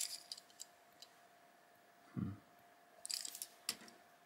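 Die-cast toy cars handled in the fingers: small metal and plastic clicks and rattles, in a short cluster at the start and again about three seconds in.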